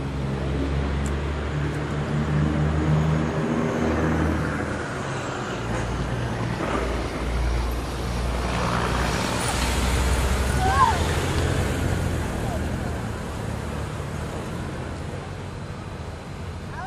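Several Honda Gold Wing GL1800 motorcycles' flat-six engines running at low riding speed, growing louder as the bikes draw close in pairs about ten seconds in, then easing off as they split away.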